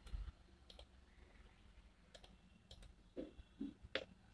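Faint, scattered small clicks from the plastic in-line remote of a wired headphone being handled, its buttons pressed under the fingers.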